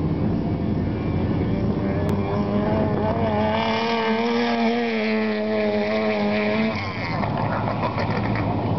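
A studded-tyre ice race car's engine running hard at high revs on a near-steady note as the car drives by, strongest from about two seconds in and fading near the end. Wind rumbles on the microphone at the start.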